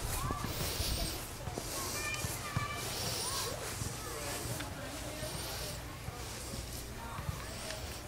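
Handheld outdoor walking sound: a low wind rumble on the microphone, with soft swishes of footsteps through grass every half second or so. Faint distant voices come and go behind it.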